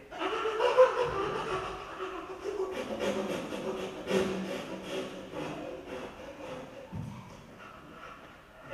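People laughing, loudest in the first second, with a quick run of pulses in the middle, fading toward the end.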